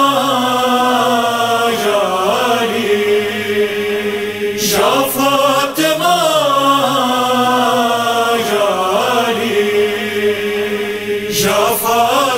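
A male reciter singing a noha, an Urdu lament, in long, drawn-out notes that slowly rise and fall in pitch.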